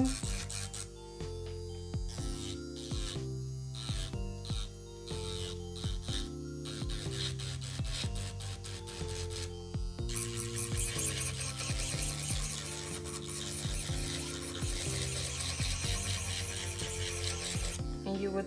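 Background music with a steady beat over an electric nail drill (e-file) sanding an acrylic nail tip to blend it into the nail. The drill's high rasping hiss grows louder from about halfway through.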